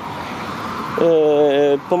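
Steady road noise of expressway traffic. About a second in, a man's drawn-out "uhh" hesitation sound rises over it.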